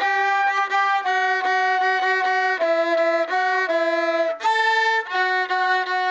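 A viola and a silver flute playing a melody together in duet, the notes changing about every half second, with a brighter, higher note a little after four seconds in.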